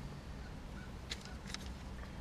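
Faint handling noise, a few soft clicks as paper is sorted by hand, over a low steady hum of a quiet car cabin.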